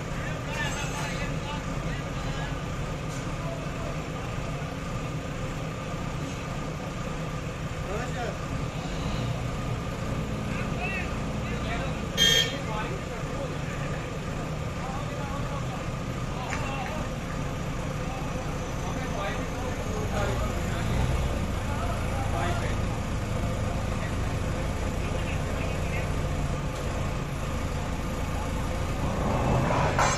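JCB 3DX backhoe loader's diesel engine running steadily under the hydraulic work of the backhoe arm, getting louder in the last third as the arm takes up the load of a one-ton steel sheet. A single sharp clank about twelve seconds in.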